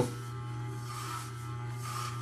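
Corded Wahl electric hair clipper with a number 8 guard, running with a steady buzz as it is pushed through short hair. A faint rasp from the blades cutting comes and goes about a second in.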